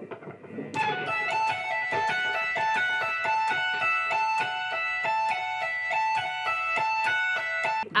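Electric guitar playing a fast, repeating pick-tapped phrase: the edge of the pick taps the A at the 17th fret and pulls off to the 14th and 12th frets, an even stream of high notes that starts about a second in.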